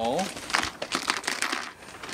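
A small clear plastic parts bag crinkling in the hands as it is handled, a quick irregular run of crackles.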